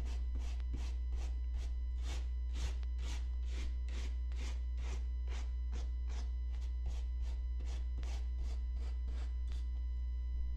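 Soft-bristled wave brush swept repeatedly across suede to lift dust, in quick, even strokes of about three a second that stop just before the end. A steady low hum runs underneath.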